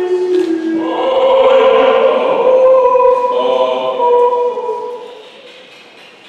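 Several voices holding long notes together in a choir-like chord. The sound swells about a second in, then fades out over the last two seconds.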